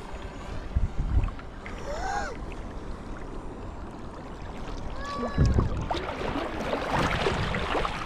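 Lagoon water sloshing and splashing against an action camera held at the water's surface. There are low knocks of water on the housing about a second in and again about five and a half seconds in, and the splashing grows louder near the end as the camera moves through the water.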